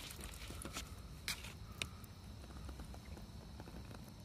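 Quiet outdoor background with a few faint, sharp clicks, the two clearest a little over a second in and near two seconds.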